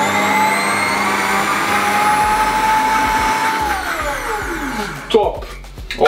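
Xiaomi countertop blender motor running at high speed, a steady whine that creeps slowly up in pitch as it purées yogurt and protein powder into a cream. About four seconds in it is switched off and spins down with a falling pitch, followed by a single knock a little after five seconds.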